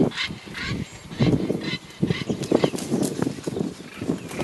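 White-backed vultures calling as they squabble at a giraffe carcass: a run of irregular calls, several close together.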